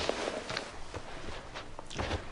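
A man's footsteps on an office floor as he gets up and walks away: a short rustle, then a few separate steps about half a second apart.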